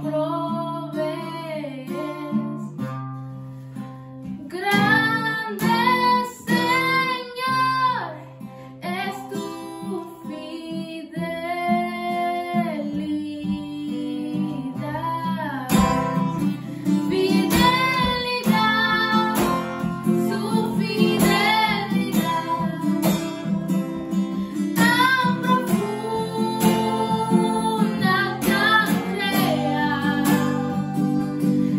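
A young girl sings a Spanish-language worship song to an acoustic guitar accompaniment. About halfway through the guitar playing becomes fuller and louder.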